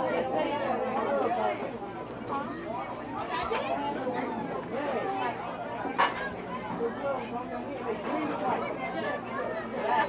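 Spectators chattering, with several voices overlapping indistinctly, and a single sharp knock about six seconds in.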